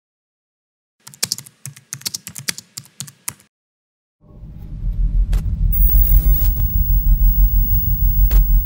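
Typing sound effect: a quick, irregular run of key clicks for about two and a half seconds. Then a deep, pulsing low drone swells in, with a couple of sharp clicks and a short hiss over it.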